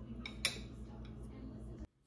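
Faint clink of a metal spoon against a ceramic plate, with one sharp click about half a second in; the sound then cuts off suddenly near the end.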